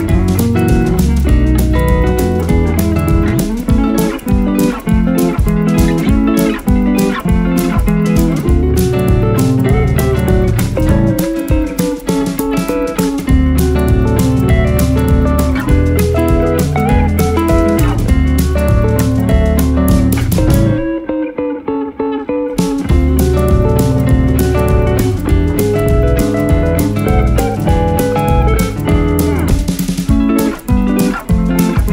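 Background music: a guitar-led instrumental with a steady beat, the drums and bass dropping out for a moment about two-thirds of the way through.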